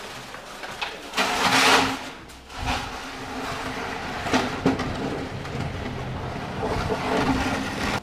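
A loud rushing noise for about a second, then a snowmobile engine running steadily at idle.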